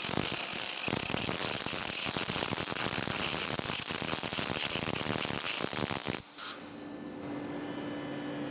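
MIG welding arc on 4 mm aluminium plate, run in MIG synergy mode with 1.0 mm wire under pure argon: a dense, steady crackle that stops suddenly about six seconds in, leaving a quieter steady hum.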